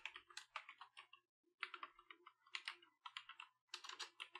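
Faint typing on a computer keyboard: quick runs of keystrokes with short pauses between them.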